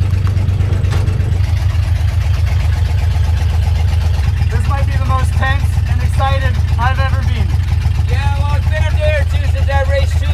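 Engine of a demolition derby truck running with a steady low drone, heard from inside the cab.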